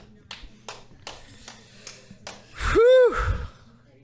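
Several faint, scattered taps and clicks, then about three seconds in one short, high voiced 'ooh' whose pitch rises and falls, the loudest sound here.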